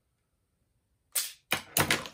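Toy grapnel launcher replica being triggered: one sharp snap about a second in, then a few quick clicks. Per the owner, the launcher is broken again and needs a long rest before it will fire.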